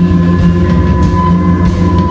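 Live amplified rock band playing loudly: a dense, sustained drone of bass and electric guitar, with a steady high ringing tone held above it.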